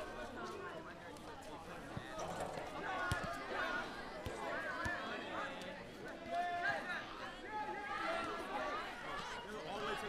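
People talking, with voices sometimes overlapping; the words are indistinct.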